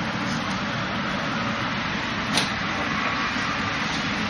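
A single short wooden knock, an arm striking the Wing Chun wooden dummy's arm, about two and a half seconds in, over a steady background hiss and hum.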